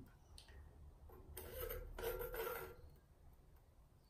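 Faint light clicks and rubbing of a metal straightedge set across a bowl's rim and a steel ruler lowered into the bowl to measure its depth, with a longer soft scrape from a little past one second.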